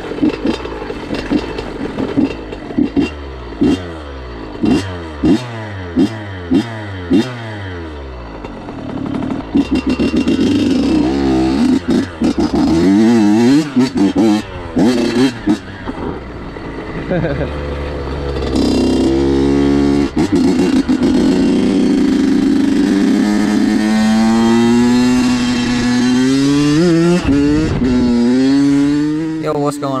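A 2006 Honda CR85's 85 cc two-stroke single-cylinder engine being ridden and revved. For the first several seconds the throttle is worked in quick rises and falls of pitch. It then settles into a long high-revving pull that slowly climbs in pitch, dips briefly near the end and climbs again.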